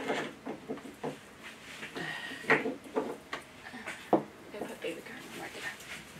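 An artificial pine wreath and its decorations being handled on a craft table: rustling with a few sharp clicks and taps.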